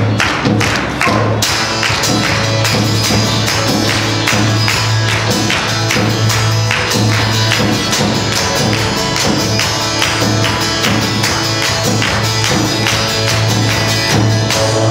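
Live church worship band playing a song's instrumental intro: strummed acoustic guitars, electric guitar and bass over a steady percussive beat. The full band, with bright cymbal-like shimmer, comes in about a second and a half in.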